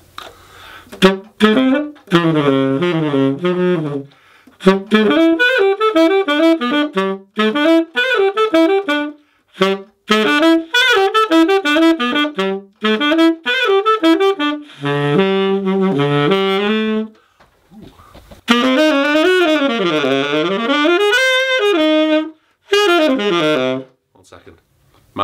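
Yanagisawa tenor saxophone played in jazz phrases: quick runs of notes broken by short pauses, with a longer phrase near the end that bends up and down in pitch.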